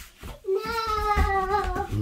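A young child's voice holding one long, slightly wavering wordless note for about a second and a half, starting about half a second in.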